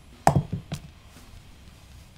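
Double bass drum pedal hardware being handled on a wooden table: a quick cluster of hard knocks about a quarter second in, then one more knock about half a second later.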